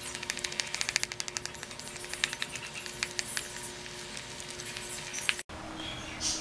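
Steel spoon stirring thick henna paste in a plastic bowl, with quick clicks and scrapes of spoon against bowl at first, then scattered ones.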